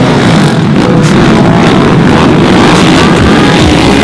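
Several racing quad (ATV) engines running hard together, loud and dense, with revs rising and falling as the riders work the throttles through the turn.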